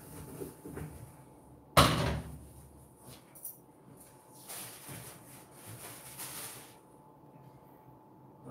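A single loud bang about two seconds in, as the plastic lid of a top-loading washing machine is shut, followed by a few softer rustling sounds.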